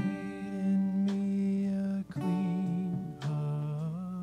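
Worship band playing a slow instrumental passage: strummed guitar chords changing about once a second under long held melody notes, with a slight wavering on the last note.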